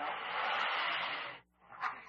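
A tranquilized polar bear taking one deep, rushing breath that lasts about a second and a half and then stops. This is the calm, deep breathing that follows its post-sedation shaking, a sign that it has let off the stress.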